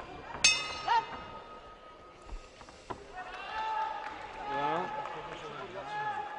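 Boxing ring bell struck once, ringing with a bright, fading tone that marks the end of the round.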